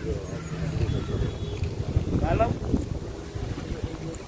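Wind buffeting the microphone outdoors, a steady low rumble throughout. A brief voice rises in the background a little after two seconds in.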